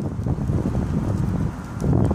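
Wind buffeting the microphone outdoors: a steady low rumble with no clear tones.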